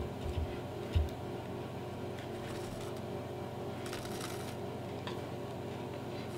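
Hand-stitching handling sounds: leather pieces shifted on a wooden table and thread pulled through punched stitching holes, with a couple of low bumps in the first second and two brief soft rustles in the middle, over a steady low hum.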